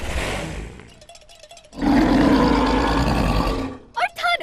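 Cartoon troll's roar: a short breathy burst at the start, then a loud sustained roar from about two seconds in that lasts nearly two seconds.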